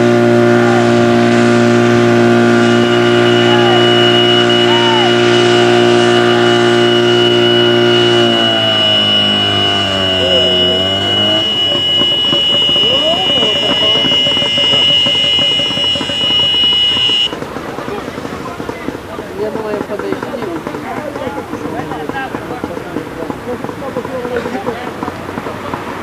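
Fire pump engine running steadily at high revs, then throttled back about eight seconds in, its pitch falling and wavering until it stops about three seconds later. A high steady whine sounds alongside from about three seconds in and cuts off sharply about seventeen seconds in, leaving a quieter mix of outdoor noise and distant voices.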